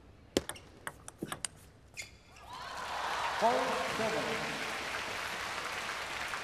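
Table tennis rally: a quick run of sharp celluloid ball clicks off rackets and table over the first two seconds. As the point ends, a large arena crowd applauds and cheers.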